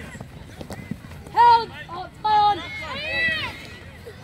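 Sideline spectators shouting high-pitched calls of encouragement: a loud short yell about a second and a half in, another just after two seconds, and a longer drawn-out shout near the end.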